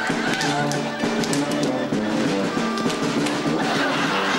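German brass band playing a folk-dance tune, with tuba and drum. Sharp hand slaps from a Schuhplattler-style thigh-slapping dance come in the first half.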